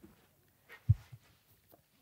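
Quiet room with a soft low thump about a second in and a couple of fainter knocks, from a person stepping back and turning while wearing a clip-on microphone.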